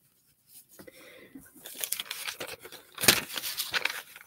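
Stiff paintbrush scrubbing over damp lined notebook paper: a dry, scratchy rasp of many quick short strokes. It starts about half a second in and grows louder and denser near the end, with the paper rustling as it is handled.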